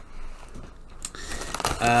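Paper and packaging crinkling and rustling as they are handled, with a run of short crackles from about a second in.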